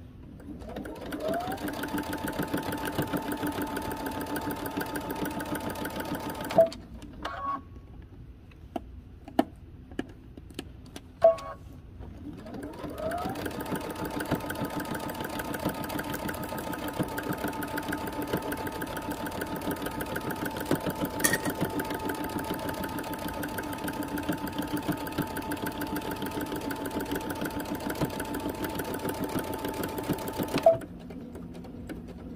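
Electric domestic sewing machine stitching a seam. It runs steadily for about five seconds, stops, gives a few short clicks, then starts again about thirteen seconds in and runs steadily to the end. Each time it starts, its pitch rises as it comes up to speed.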